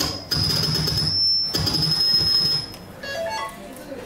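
Loud recorded backing-track music over a PA system, with a steady high synth tone, for about two and a half seconds. It then drops away, and a short rising run of electronic notes follows.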